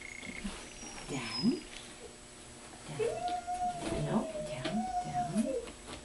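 A dog whining: a short whine about a second in, then a long drawn-out, wavering whine lasting about two and a half seconds.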